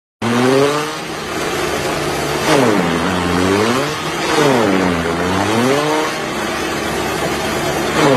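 Forage chopper's motor running under load, its pitch sagging and recovering twice as armfuls of green stalks are fed in and bog it down, over a steady noise of chopping and blowing.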